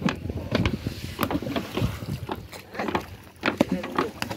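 Irregular knocks and thumps on a wooden fishing boat as a fish net and its rope are hauled in by hand over the side.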